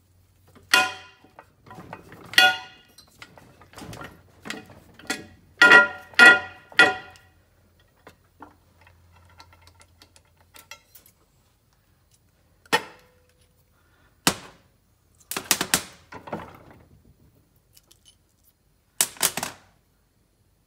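Sharp metallic knocks with a ringing tone, about nine in quick succession over the first seven seconds and then a few scattered ones, as the steel halves of a small Honda four-stroke crankshaft are pressed apart through a hole in a steel plate. A low hum runs underneath and stops about seven seconds in.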